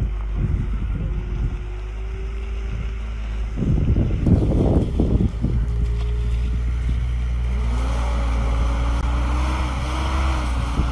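John Deere skid steer loader's diesel engine running steadily, its note rising about eight seconds in. Wind buffets the microphone, hardest around four to five seconds in.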